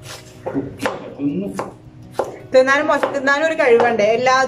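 A few irregular knocks of a knife on a cutting board, as food is being chopped. Then a woman starts talking, about two and a half seconds in.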